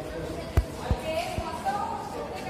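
Three short, dull knocks, a plastic reagent bottle and its screw cap being handled on a wooden bench, with voices talking faintly in the background.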